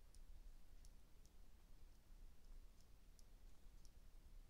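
Near silence, with faint, irregular light ticks from a stylus tapping and sliding on a tablet screen as handwriting is written.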